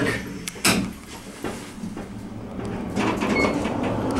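Otis traction elevator cab setting off: a single knock about half a second in, then the steady hum of the car running as it picks up speed, with a brief thin high tone a little after three seconds.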